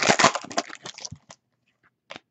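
Trading cards being handled and flipped through by hand: a quick run of crackly clicks lasting about a second.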